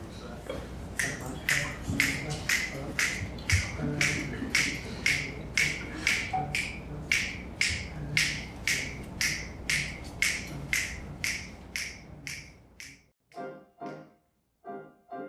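Finger snaps keeping a steady beat of about two a second to set the tempo for the band. Piano chords come in near the end.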